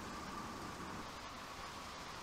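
Faint, steady road noise inside a motorhome's cab while driving on a wet road: engine and tyre noise with no distinct events.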